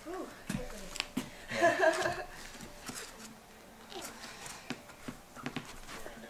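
Dangling legs kicking and twitching, giving scattered knocks and scuffs against the wall and floor, with a short wordless vocal sound about a second and a half in.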